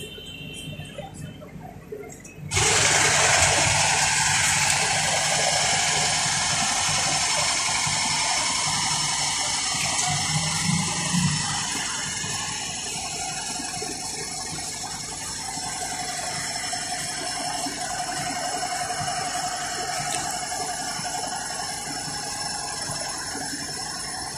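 A steady, loud hissing spray starts suddenly about two and a half seconds in and keeps going, easing slightly about halfway.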